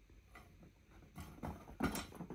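Chinchillas scuffling: a quick run of small thumps and scrabbling paws on the floor, starting a little past halfway and loudest just before the end.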